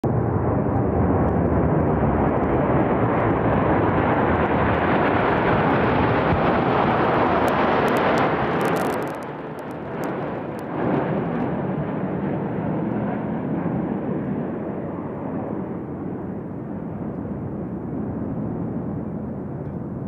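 Steady roar of aircraft engines heard in the air, with no speech. It drops noticeably in level about nine seconds in and carries on more quietly.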